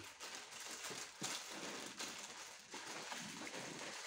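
Gloved hands handling cotton wool and small bottles while wetting swabs with alcohol and iodine: soft continuous rustling with a few light clicks.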